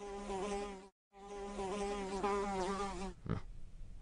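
A housefly buzzing in flight, its pitch wavering, in two stretches with a brief break after about a second. A short sharp sound comes just after three seconds in, then the buzz starts again near the end.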